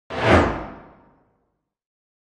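Channel logo intro sound effect: a single whoosh that starts suddenly, peaks within half a second and fades away over about a second.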